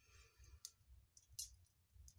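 Firewood burning in a wood stove, crackling faintly with a few sparse sharp clicks.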